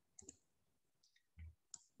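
Near silence with a few faint, short clicks: two close together near the start and another just before the end, with a soft low thump between them.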